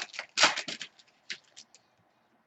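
Trading cards and a foil card-pack wrapper being handled: a crackly rustle about half a second in, then a few light ticks that die away.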